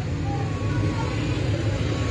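A motor vehicle engine idling steadily nearby, a constant low hum, with faint voices in the background.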